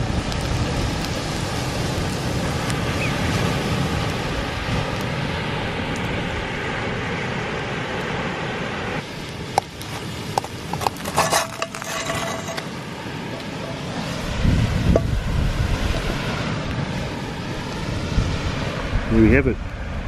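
Steady surf and wind noise on the microphone. About ten seconds in come a few clinks and scrapes, with a brief ring, as the frying pan is tipped over an enamel camping plate to slide the fish fingers and eggs onto it.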